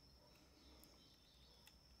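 Near silence: faint room tone, with a couple of tiny faint clicks.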